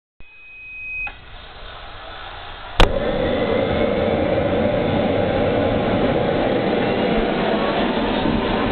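TJT80N kerosene model jet turbine starting up: a thin high tone that grows louder for about a second, a sharp crack nearly three seconds in, then the turbine running with a steady loud rushing noise.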